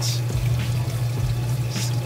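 Water running and trickling steadily in an aquarium refugium, with a constant low hum underneath.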